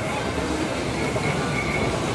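Steady ambient noise of a busy indoor shopping mall: a dense, even rumble and hiss with a few faint high tones near the end.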